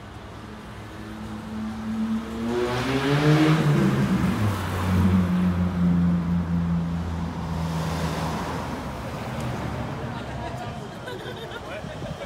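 A motor vehicle's engine revving up, its pitch climbing over a couple of seconds, then dropping to a steady lower note that holds for about four seconds before fading.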